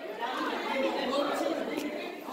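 Indistinct chatter of several children's voices overlapping in a large indoor space, with no single voice standing out.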